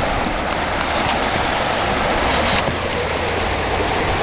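River water rushing steadily past the bank: a loud, even noise.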